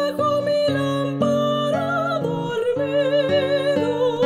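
A soprano sings long held notes with a wide vibrato over a classical guitar's plucked accompaniment, in a song for voice and guitar.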